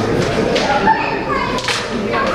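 Background chatter of several voices, children's voices among them, with a few faint clicks.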